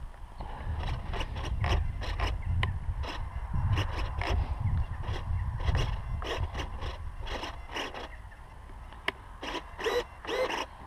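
Wind buffeting the microphone as a low, uneven rumble, with scattered rustles and clicks of gear being handled close by.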